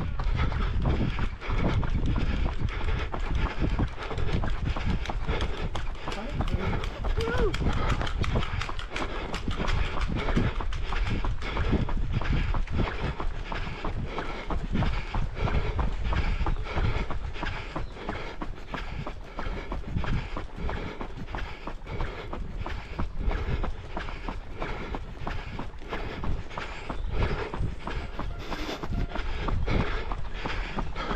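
Running footsteps on a paved path, an even stride rhythm of a few steps a second, over a low rumble of wind on the microphone.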